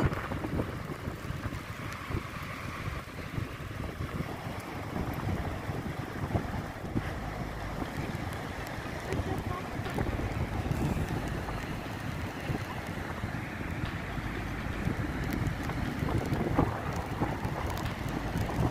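Storm wind buffeting the microphone: a rough, fluttering rumble that rises and falls with the gusts.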